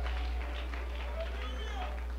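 Steady low electrical hum in the church sound system, with faint voices from the congregation in the background.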